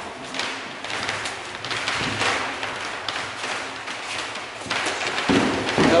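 Kicks and boxing-glove punches landing on a sparring partner's guard: an irregular series of thuds, the heaviest near the end.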